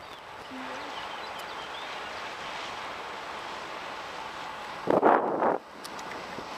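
Steady wind noise on the microphone, with a louder gust lasting about half a second near the end.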